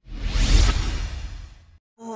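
An editing whoosh sound effect with deep bass underneath, starting suddenly, peaking about half a second in and fading out over the next second.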